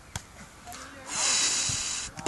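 A single short tap of a volleyball being struck at the net, then a loud hiss lasting about a second near the end, a person hissing or blowing out close to the microphone.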